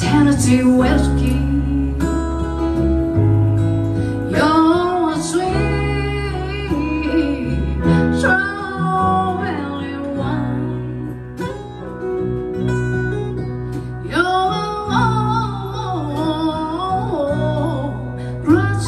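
Live band music: a woman sings lead in drawn-out phrases over strummed acoustic guitars, a bass line and piano.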